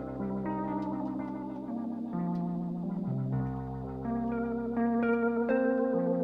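Rock band instrumental: slow, sustained chords under a melody line, played on an electric instrument thick with chorus and echo effects, growing louder about five seconds in.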